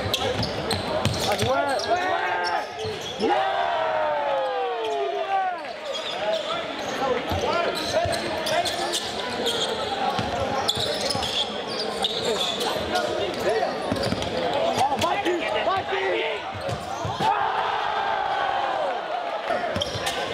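Basketball game in a gym: the crowd in the stands talks and shouts, with the ball bouncing on the hardwood court now and then.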